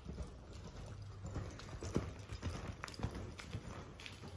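Hoofbeats of a ridden horse on the soft dirt footing of an arena, a run of irregular dull thuds that is loudest about two seconds in as the horse passes near.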